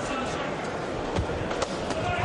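Steady arena crowd noise from a boxing broadcast, with two sharp thuds from the ring a little over a second in and again about half a second later.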